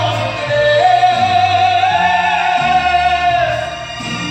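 A man singing into a microphone, holding one long note that wavers in pitch, over backing music with a bass line.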